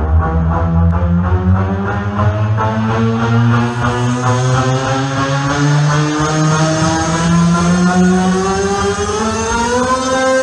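Hard trance playing loud through a club sound system during a breakdown. The kick drum drops out, and a sustained synth chord rises steadily in pitch over the last few seconds as a build-up.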